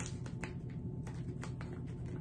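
Scattered small crinkles and clicks from a resealable plastic candy pouch as fingers pick and pull at its sealed top, trying to get it open, over a steady low hum.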